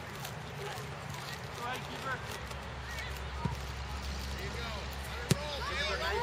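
A soccer ball being kicked on a grass field: a faint thud about three and a half seconds in and a sharper, louder thud just after five seconds, over distant voices from the field and a low steady rumble.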